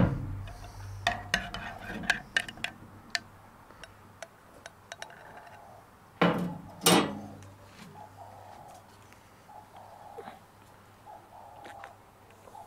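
Light clinks and knocks of a ceramic coffee mug, metal spoon and kettle being handled on a table, with a sharp knock at the start and a run of small clicks over the first few seconds. Two louder short noises come a little past halfway.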